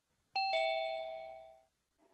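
Zoom's two-note chime, sounding as a participant joins the meeting: a quick ding-dong, the second note slightly lower, that rings and fades within about a second.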